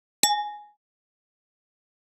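Notification-bell sound effect from a subscribe-button animation: one bright ding about a quarter second in, ringing out and fading within half a second.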